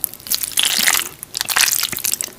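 Close-miked mouth sounds of eating spicy instant noodles: wet chewing with rapid small clicks and crackles, louder at about half a second and again at about a second and a half.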